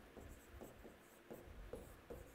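Marker pen writing on a whiteboard: a faint run of short strokes as a word is written out.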